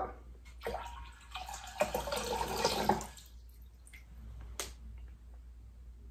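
Water poured from a glass pitcher into a glass bowl: a splashing stream that lasts about two seconds, followed by a few drips.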